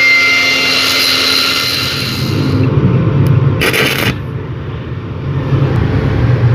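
Angle grinder running with a steady whine against a broken aluminium fan hub, cleaning the surface before welding, then winding down about two and a half seconds in. A short harsh scrape follows about a second later.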